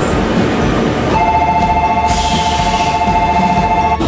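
Low rumble of a train standing at the platform. About a second in, a steady two-note electronic ringing starts, a platform departure bell. From about two seconds a high hiss of air joins it, and both stop abruptly near the end.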